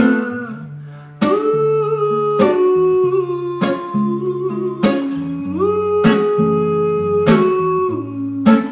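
Nylon-string classical guitar strummed in slow, even chords, about one every second and a bit, with a man singing long held notes over it.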